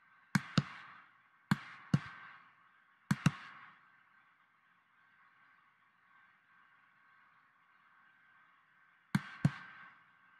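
Computer mouse clicking: four pairs of sharp clicks, three pairs in the first few seconds and one near the end, over a faint steady hum.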